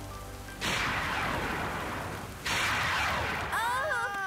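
Two thunderclaps over rain, each a sudden crack that fades over about a second, the second coming nearly two seconds after the first. A character's voice cries out near the end.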